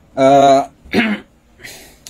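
A man clearing his throat: a loud, held, voiced hum, then a short harsh cough about a second in, and a soft breathy sound near the end.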